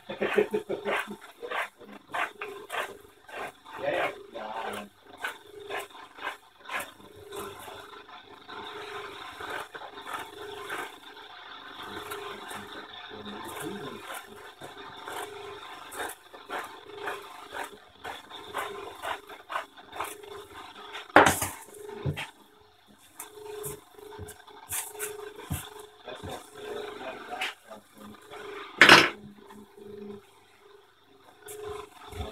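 Scissors snipping and handling of carbon fibre fabric: a run of small clicks and rustles, with two sharp knocks in the second half, the last near the end, over a faint steady hum.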